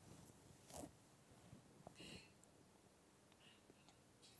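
Near silence, with a few faint soft clicks about one and two seconds in.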